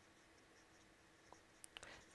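Very faint marker pen writing on paper, small scratches coming and going, with a few brief clicks near the end.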